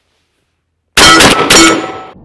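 A JC Higgins Model 60 12-gauge semi-automatic shotgun firing twice, about half a second apart, each shot very loud and ringing down. The shots come about a second in, after near silence.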